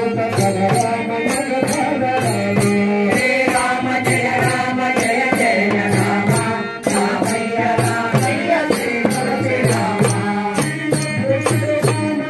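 Devotional bhajan: a group chanting the names of Rama in unison, with tabla and a small hand drum and small hand cymbals keeping a steady beat of about three strokes a second.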